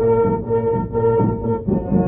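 Background music of held notes over a lower line that changes about every half second.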